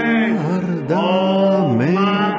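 A man singing a slow tune without clear words, holding long notes that slide from one to the next.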